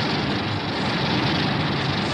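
Godzilla atomic-breath sound effect: a steady rushing noise with a deep rumble beneath it.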